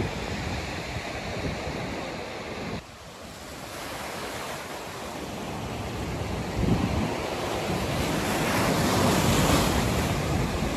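Rough sea surf breaking and washing over rocks and against a concrete pier, with wind buffeting the microphone. The sound drops suddenly about three seconds in, then builds steadily louder as a wave surges in near the end.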